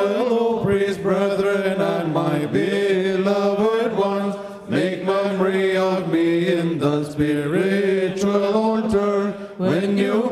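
Liturgical funeral chant: a voice sung on long held notes with gliding pitch, a few brief pauses between phrases.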